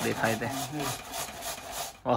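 Vegetable flesh being grated on a metal hand grater: quick repeated scraping strokes, several a second.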